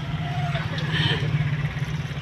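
Steady low rumble of a car heard from inside its cabin, with a faint voice over it.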